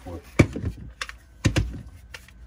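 Polymer rifle magazines (Magpul PMAGs) clacking against one another as they are lifted out of a fabric dump pouch: a few sharp plastic clacks, the loudest two about a second apart.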